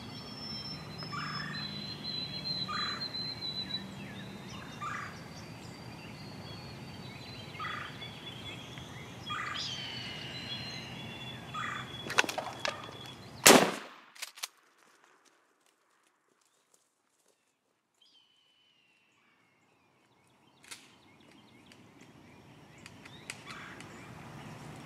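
A wild turkey calling in short repeated notes with other birds singing, then a single loud shotgun blast about halfway through as the gobbler is shot. Right after the shot the sound drops out to near silence for several seconds before faint outdoor sounds return.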